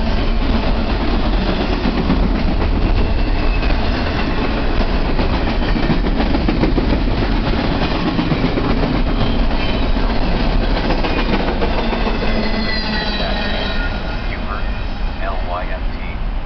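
Double-stack intermodal freight train's container well cars rolling past close by, a steady rumble and clatter of steel wheels on rail. Thin high wheel squeals come in near the end.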